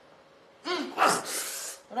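A person's voice: after a short pause, a brief vocal sound, then a long breathy gasp lasting about a second.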